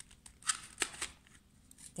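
Hard plastic lid parts of a Tupperware Extra Chef hand chopper being twisted apart, with faint rubbing and a few short plastic clicks about half a second and a second in.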